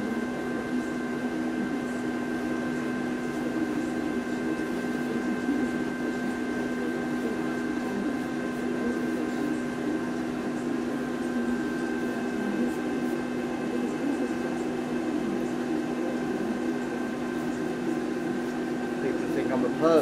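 Steady mechanical hum of a running motor, holding one low tone and a few higher tones at an unchanging level.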